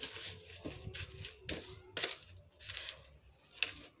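A thin plastic bag crinkling and soil mix rustling as the bag is filled by hand, in several short bursts.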